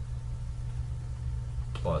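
Steady low background hum of the recording during a pause in speech, with a man's voice saying "plus" near the end.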